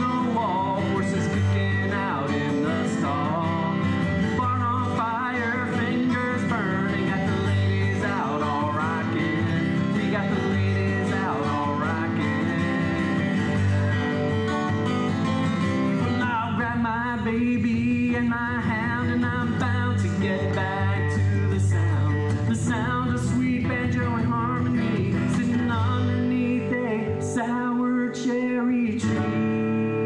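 A man singing a country-folk song while strumming a steel-string acoustic guitar. Just before the end the voice drops out and a strummed chord is left ringing.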